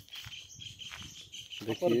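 Insects chirring steadily in the background, with a man's voice returning briefly near the end.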